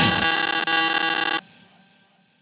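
Closing sustained buzzy synth chord of an electronic track, the bass already gone, cutting off sharply about one and a half seconds in and leaving a short faint fading tail.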